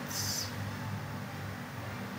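Low, steady background hum with faint room noise, and a brief soft hiss just after the start.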